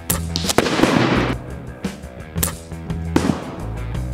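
An Umarex Big Blast reactive target is hit by a .25 air rifle pellet and goes off with a sharp bang about half a second in, followed by about a second of loud crackling burst. Rock music plays underneath.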